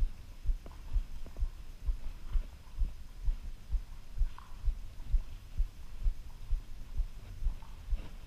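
A horse's footfalls on arena sand under a rider: dull low thumps in a steady rhythm, about two a second.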